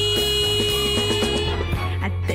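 Music from a 1970 Japanese pop single: a long steady held note over a moving bass line, ending about one and a half seconds in.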